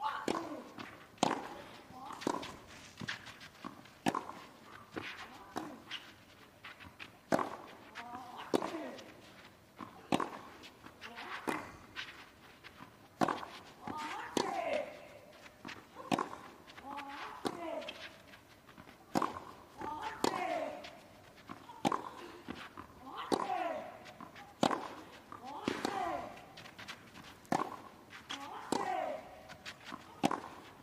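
A long clay-court tennis rally: racquets strike the ball about every second and a half, over twenty hits in all, and most hits are met with a player's short grunt that falls in pitch.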